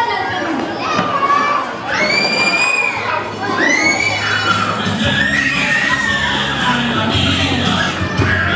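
A group of children shouting together, two long high-pitched held calls over crowd noise, then music starts up about five seconds in.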